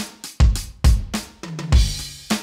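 Vangoa VED-B10 electronic drum kit's sound module playing its preset 5 kit, heard straight from the module's output. A steady kick-and-snare beat with hi-hat, a tom about a second and a half in, then a crash cymbal near the end.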